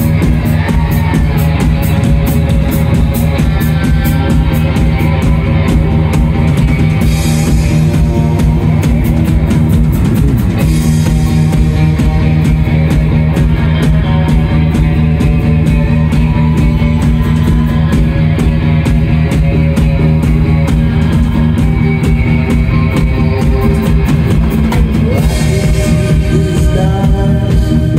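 Live rock band playing loud: electric guitar, electric bass and a drum kit keeping a steady, driving beat.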